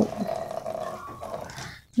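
Kitchen tap running a thin stream of water into a stainless steel sink while dishes and a plastic toy are rinsed by hand; the sound fades and cuts out abruptly near the end.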